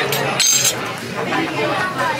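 Diners' chatter in a restaurant, with a short, bright clink of tableware about half a second in.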